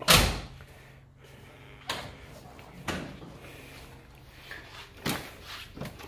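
A car door shut with one solid slam, followed by three lighter knocks and clacks spaced a second or two apart as the car's hood is unlatched and propped open.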